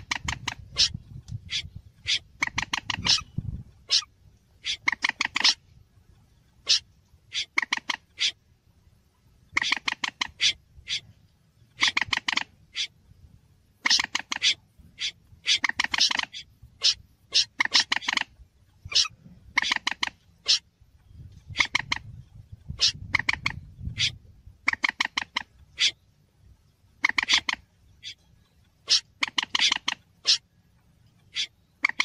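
Recorded bird-trapping lure calls of a moorhen and a snipe mixed together: short bursts of rapid, clipped notes, repeating every second or two. A low rumble sits underneath near the start and again about two-thirds of the way through.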